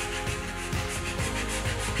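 Sandpaper rubbed by hand over a carved prototype of a prosthetic arm shell, in repeated scratchy strokes, under background music with steady held tones.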